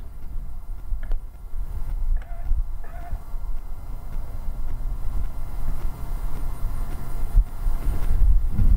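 Wind buffeting an outdoor microphone: an uneven low rumble, with a few faint short tones about two and three seconds in.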